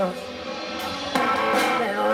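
Live rock band playing amplified electric guitar and bass, a little quieter at first, then a sharp loud accent just after a second in.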